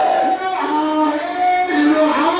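A marching crowd chanting in unison, the voices holding sung notes that step up and down between a few pitches.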